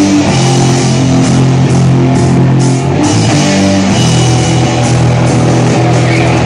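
Punk metal band playing live: loud electric guitar chords with bass and a drum kit, an instrumental passage with no singing.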